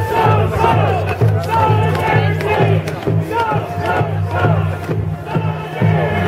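A group of voices singing a wavering chant together over a steady, regular low drumbeat.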